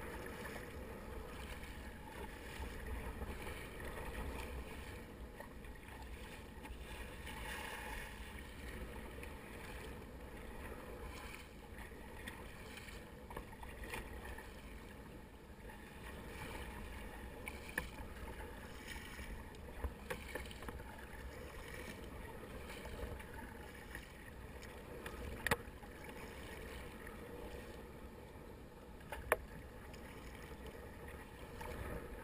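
Sea kayaking in open chop: water washing and splashing against a plastic sit-on-top kayak's hull with the paddle strokes, over a steady wash of sea and wind. A few sharp clicks or knocks stand out in the second half, the loudest near the end.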